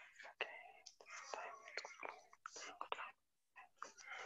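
Faint whispering: a woman muttering under her breath.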